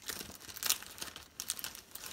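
Plastic packaging crinkling and rustling in irregular crackles as a pile of wrapped items is rummaged through, the sharpest crackle a little after half a second in.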